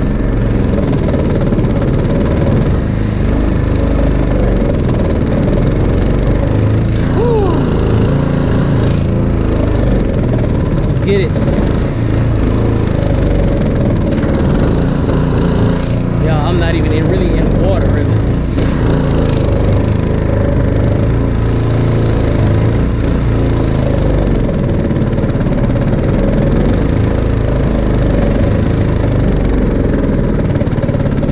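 Small boat's outboard motor running steadily as the boat moves under way, with wind and water noise on the microphone.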